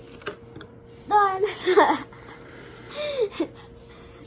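A young girl's excited wordless exclamations, a loud one about a second in and a shorter one near three seconds, after a light click as she pries open a small cardboard compartment of a toy collector case.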